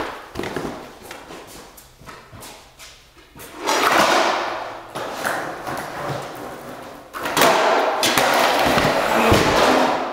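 Breakdancer's sneakers, hands and body knocking and thumping on a bare concrete floor during floor moves, with two long stretches of loud scraping as he slides and spins on the concrete.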